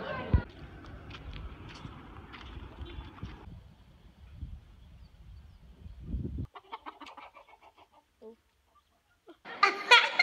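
Domestic chickens clucking in short, sparse calls in the second half, after a low rumbling noise with a sharp knock just after the start. Children's voices come in near the end.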